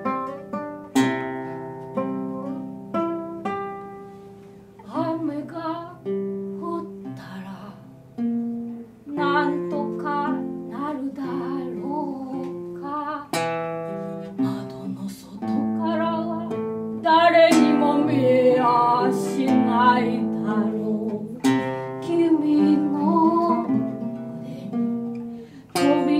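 Two acoustic guitars fingerpicked together in a slow song. A woman's singing voice comes in over them about five seconds in and grows louder in the second half.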